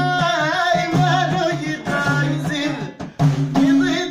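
A woman singing a Moroccan folk song with wavering ornaments, over a violin bowed upright on the knee and hand-beaten frame drums (bendir) keeping a steady beat. The music drops out briefly about three seconds in.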